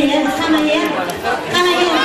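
Chatter from an audience of many voices, with a woman's voice over a stage microphone.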